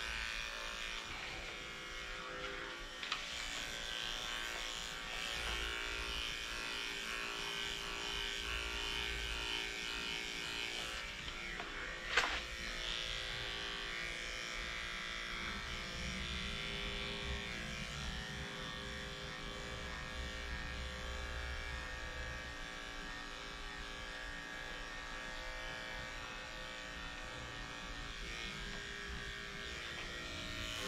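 Corded electric dog-grooming clippers with a #7 blade running steadily as they shave through a matted coat, with one brief sharp knock about twelve seconds in.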